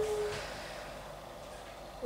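A young woman's singing voice holding one steady note, which ends about half a second in, followed by quiet room tone.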